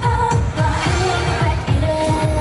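K-pop song with female singing over a steady drum beat, played through the stage's sound system and picked up live by the camera.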